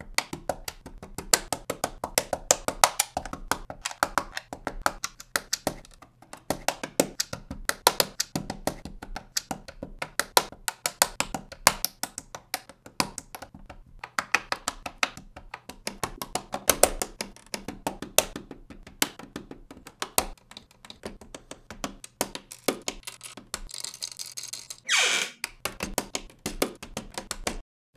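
Rapid, irregular clicking and snapping of plastic LEGO bricks being pressed together, sped up in a time-lapse. Near the end a short swoosh falls in pitch.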